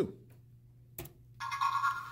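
A single click about a second in, then a short steady electronic beep with several overtones, lasting about half a second, from the LEGO Mindstorms EV3 brick's speaker as the sorting program is started.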